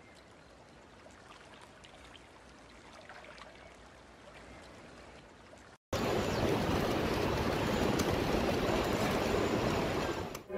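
Water sound effect: a soft, even rushing hiss that cuts out for an instant about six seconds in and comes back much louder.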